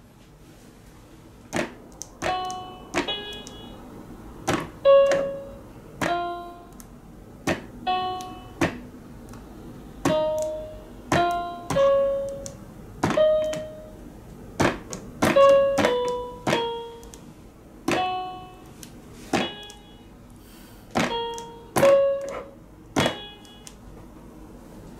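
Keys of a children's electronic toy piano tablet pressed one at a time, each a plastic click followed by a short bright electronic note that dies away. The notes come about once a second at uneven intervals, making a random, wandering melody.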